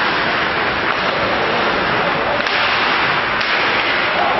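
Steady, loud, noisy ice hockey rink sound during play, with two short sharp knocks about two and a half and three and a half seconds in.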